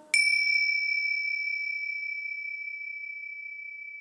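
A small bell struck once, giving a high, clear ring that fades slowly.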